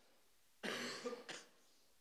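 A man coughing into his hand: a cough of about half a second, then a brief second one right after.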